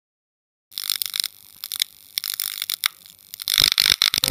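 Electrical crackling and buzzing sound effect of a neon sign flickering on: irregular clicks and buzzes starting about a second in after a moment of silence.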